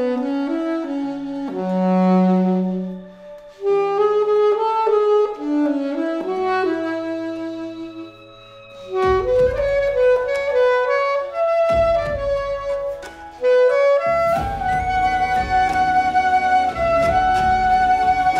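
Alto saxophone playing a lyrical melody of held and moving notes over a recorded accompaniment; a drum beat and bass join about nine seconds in.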